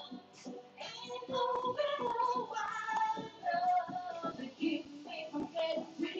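A woman singing into a microphone over a backing beat, amplified through PA speakers in the room.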